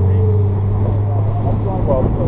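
Wind buffeting a body-worn camera's microphone over a steady low hum, with faint talk in the background.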